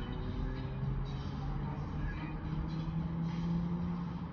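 Low rumble with a steady engine hum whose pitch rises slowly, like a motor vehicle running.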